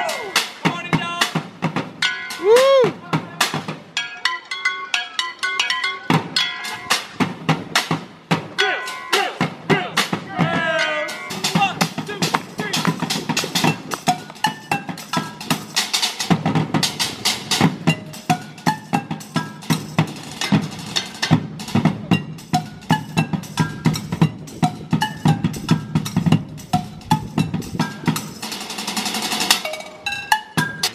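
A street percussion group drums with sticks on stainless-steel pots, pans and mixing bowls, playing a fast rhythm of sharp metallic clangs with ringing pitched tones. Heavier low thumps join in about twelve seconds in.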